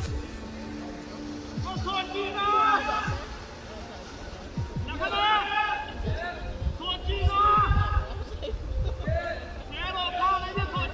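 Background music: a song with a singing voice in phrases of wavering, held notes.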